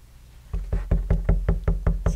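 A clear acrylic stamp block with a rubber-backed berry stamp tapped over and over onto a dye ink pad to ink it: a quick run of light knocks, about five a second, starting about half a second in.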